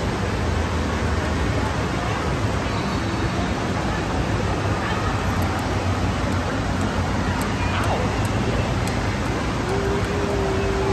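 Steady, even roar of background noise from a busy indoor space, with faint far-off voices in it.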